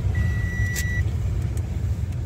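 Low, steady rumble of a car's engine and tyres heard from inside the cabin as it drives slowly. A single steady high beep, under a second long, sounds near the start.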